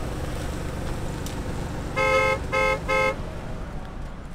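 Car horn honked three times in quick succession, the first blast a little longer than the other two, over a steady low rumble.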